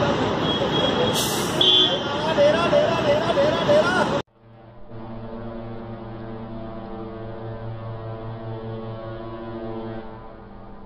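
Bus-stand street noise with voices and traffic, which cuts off abruptly about four seconds in. A steady droning tone of several held notes follows, like ambient background music.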